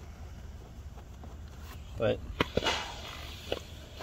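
Steam iron held over carpet: a click, then a short hiss of steam about two and a half seconds in, over a low steady rumble.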